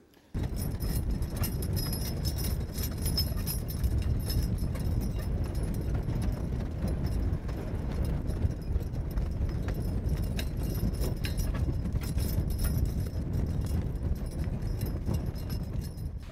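Team of two mules dragging a large tractor-tire drag over loose dirt: a steady low rumble of the tire scraping the ground, with hoofbeats.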